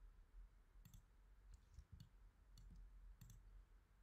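Near silence broken by about half a dozen faint, scattered clicks from a computer's pointing device as objects are picked on screen.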